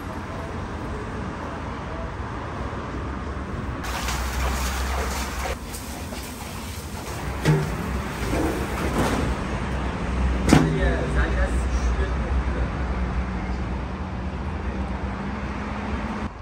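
A large metal basin clanks and rings against a tandoor's rim as it is set over the opening to close the oven on baking samsa, with two sharp knocks a few seconds apart, the second the loudest. Under it runs a steady low hum with voices.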